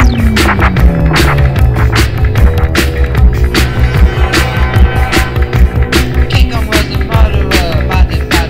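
1980s dark-wave/post-punk dance music from a DJ mix: a steady, driving drum beat over heavy bass, with a tone sliding downward during the first two seconds.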